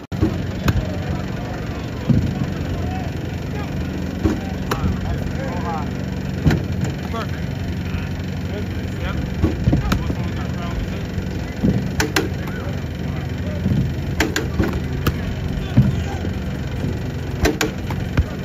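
Practice-field ambience: a steady low hum with voices talking in the background and scattered sharp knocks and claps.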